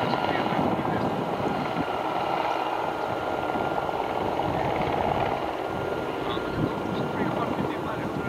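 Radio-controlled model helicopter flying: a steady high-pitched engine and rotor whine with a thin, even tone in it.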